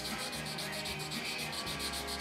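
Wet 320-grit sandpaper rubbing back and forth over the putty-filled seam of a plastic model hull, in quick, even strokes several a second, smoothing the filled seam down.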